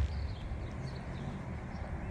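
Outdoor ambience: faint birds chirping over a steady low rumble.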